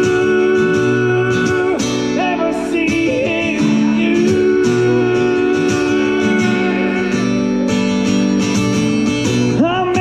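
Acoustic guitar played through an instrumental passage of a country-rock song, its chords ringing on steadily.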